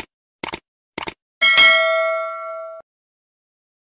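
Subscribe-button animation sound effect: three short clicks about half a second apart, then a bell ding that rings for about a second and a half and cuts off suddenly.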